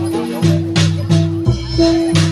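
Live Javanese ensemble music for a reog battle dance: drums beating about three to four strokes a second under a steady held metallic tone, with sharp jingling percussion on the beats.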